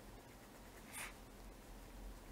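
Faint scratch of a pen on paper, drawing a straight line, with one brief soft hiss about a second in.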